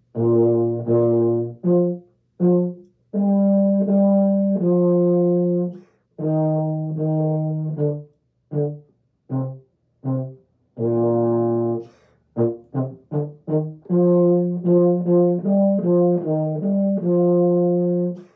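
Solo euphonium playing a well-known tune in phrases, with varied articulations: long held notes alternate with short, separated notes and brief rests. The bursts of quick detached notes fall in the middle and about two-thirds of the way through.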